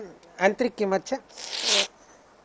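A few spoken syllables, then a short, loud hiss lasting about half a second near the end, such as a sharp breath or sniff close to the microphone.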